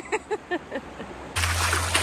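Bare feet wading into shallow river water, splashing, starting suddenly about a second and a half in over a low steady rumble on the microphone. Short bits of voice come before it.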